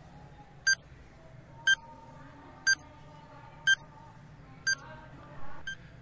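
Countdown-timer sound effect: six short electronic beeps, one a second, the last one fainter.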